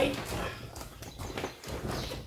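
Rustling and a few light knocks from items and packaging being handled and moved about on a table.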